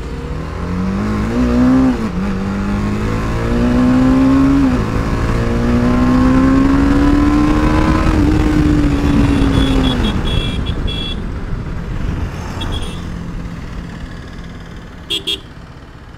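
BMW G 310 RR's single-cylinder engine pulling through the gears: the pitch climbs and drops at upshifts about two and five seconds in, then climbs slowly and falls away as the bike rolls off and slows. Short horn toots sound in the second half, the last near the end.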